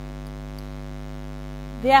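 Steady electrical mains hum, a constant low buzz with many evenly spaced overtones. A woman's voice starts near the end.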